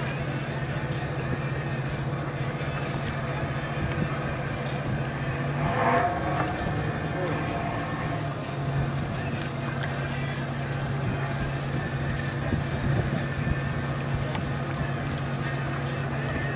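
A steady low engine drone, easing briefly about eight seconds in, under a background of distant voices and music. About six seconds in, a louder voice rises briefly.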